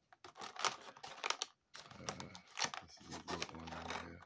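Clear plastic toy packaging crinkling and clicking as it is handled, an irregular run of small crackles and taps.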